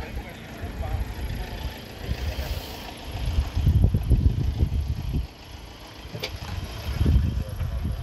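Gusty low rumble of wind buffeting the microphone, swelling loudest about halfway through and again near the end, with a single sharp click in between.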